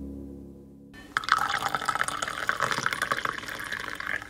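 Hot coffee poured from a carafe into a ceramic mug, a splashing, filling sound that starts about a second in as a low tone fades out.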